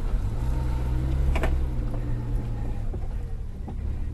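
Suzuki Jimny engine running steadily at low revs, with a single sharp knock about a second and a half in.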